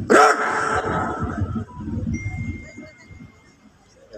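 A drill commander's shouted execution word "gerak!" over a loudspeaker, completing the dress-right command. It is followed by about two and a half seconds of many boots scuffing and stamping as the ranks dress right, fading away.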